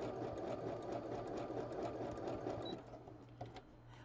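Domestic electric sewing machine running fast as it stitches across a fabric quilt block, a rapid even run of needle strokes that stops about three seconds in.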